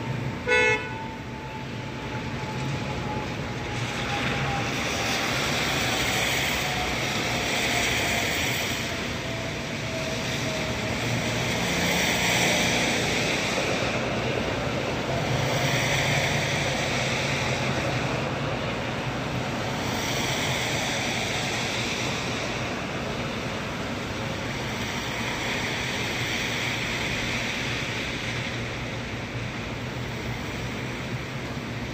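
Steady rain with a hiss that swells and fades every few seconds, and a short vehicle horn toot about half a second in. A faint tone slides slowly down in pitch over the first dozen seconds.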